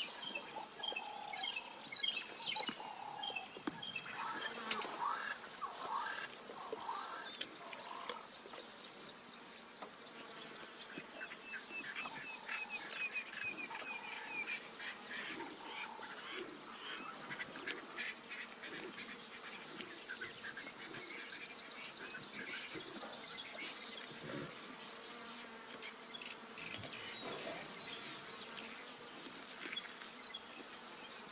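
Wild bird calls and chirps in the first few seconds, then high, rapid trills that repeat over and over, typical of insects, with more bird calls mixed in.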